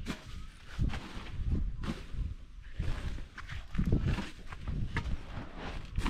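Footsteps on bare dirt: irregular soft thuds about once a second, with a low rumble under them.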